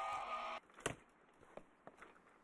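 Electronic video game tones holding steady, then cutting off suddenly about half a second in, followed by a single sharp click and a few faint ticks.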